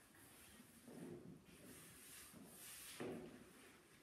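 Near silence, with soft scuffs and steps of dance shoes on a parquet floor: one swell about a second in and a sharper, louder one about three seconds in.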